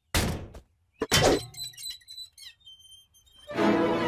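Cartoon soundtrack effects: a sharp thunk, then a second impact about a second in followed by a crash with high ringing. Music with held chords comes in about three and a half seconds in.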